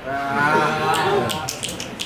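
Audience reacting to a punchline with a long, drawn-out vocal 'ooh'. A few sharp clicks follow in the last half second.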